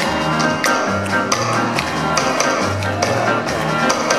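Live band playing an instrumental passage: upright double bass plays a low line of held notes under regular snare-drum taps and electric guitar, with no singing. The band comes in together right at the start.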